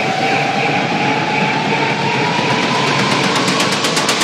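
Electronic dance music build-up: a synth tone rising slowly in pitch over a wash of noise, with the bass and kick drum dropped out. A quick run of short hits comes in about three seconds in.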